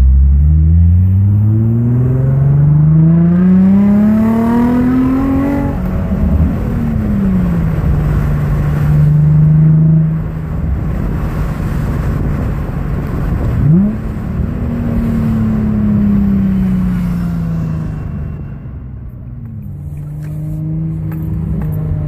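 Infiniti G35 coupe's 3.5-litre V6, with a Motordyne exhaust and NWP Engineering throttle body, under hard acceleration in second gear: the engine note climbs steadily for about six seconds, then drops sharply and holds. Near the middle there is a quick rev, followed by a slowly falling note as the car slows.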